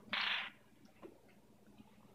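A brief plastic scrape as the Magic Bullet blender's cup is taken off its motor base, then near quiet with one faint tick about a second in.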